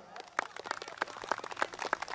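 Light applause from a small seated audience: many irregular, overlapping hand claps.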